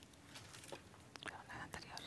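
Quiet hall with a few faint clicks and rustles in the second half, along with faint whispered voices.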